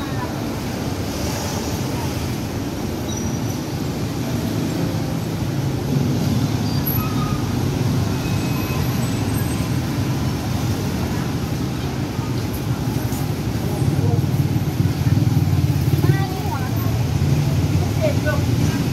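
Heavy city road traffic: a steady mix of car and motorbike engines, swelling louder for a few seconds near the end.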